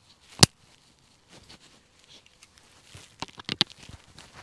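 A sharp click about half a second in, then faint rustling and a quick run of clicks near the end: hands working plastic interior trim and small wiring connectors loose in a truck cab.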